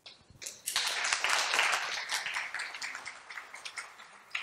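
Audience applauding, swelling in the first second and tapering off toward the end.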